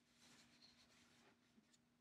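Near silence: faint rustling of hands handling and turning a Blu-ray box set, over a low steady hum.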